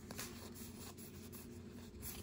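Faint sliding and rubbing of paper trading cards against each other as a small stack of Pokémon cards is fanned and shifted between the hands, with a few light clicks.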